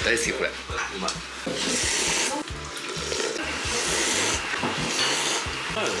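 People slurping ramen noodles from bowls: a few long, hissy slurps, one after another.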